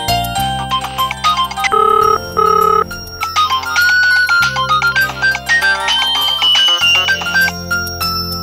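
Smartphone ringing with an incoming call: a melodic ringtone of held notes, over a background music score with sustained low notes.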